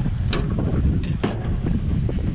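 Wind buffeting the microphone as a steady low rumble, with a few sharp clicks or knocks about a third of a second in and again around a second in.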